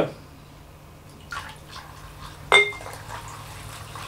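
Methoxide being poured from a glass jar into a bucket of used vegetable oil, a faint trickle of liquid, the step that starts the biodiesel reaction. A single ringing glass clink comes about two and a half seconds in.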